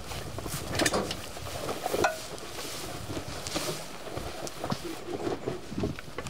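Camouflage netting rustling and scraping as it is handled, with irregular clicks and a few sharper knocks, the loudest about one and two seconds in.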